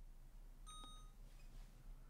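FeiyuTech Scorp 2 gimbal giving a single short, high electronic beep a bit under a second in as it is switched on, faint against near silence.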